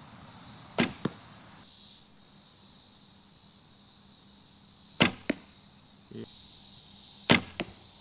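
Three shots from a traditional bow. Each is a sharp snap of the string on release, followed about a quarter second later by a fainter smack of the arrow hitting a foam 3D target.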